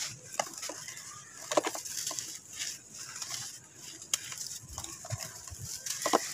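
Dry red sand cakes being crushed and crumbled by hand, in irregular gritty crunches and crackles with loose sand trickling between the fingers.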